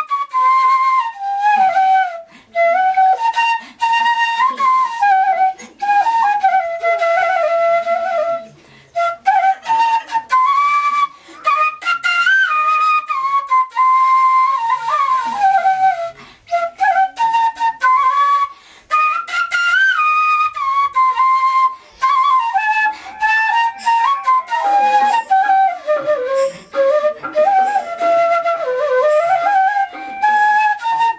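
Side-blown bamboo flute (bansuri) playing a solo melody: a single line that rises and falls in pitch, phrased with short gaps for breath.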